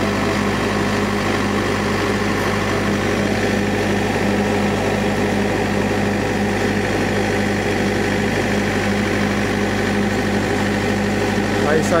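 A steady low mechanical hum, like an engine or machine idling, over a constant hiss; it holds at one level throughout.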